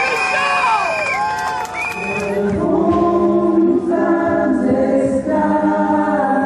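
A woman shouts a long, high call through a PA; about two seconds in, a crowd of voices takes up a protest chant together, singing in long held notes.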